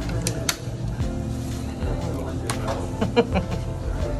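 A thick plastic straw being jabbed into the lid of a plastic boba tea cup: a few sharp clicks and crackles of plastic, the loudest cluster near the end, over background music.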